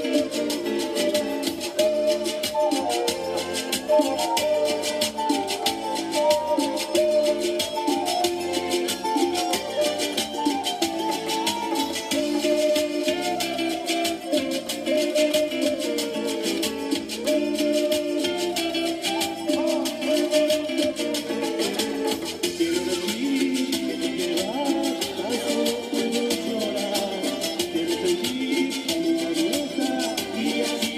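A Latin song played live on a wooden flute over amplified backing music with a steady beat and shaker rhythm.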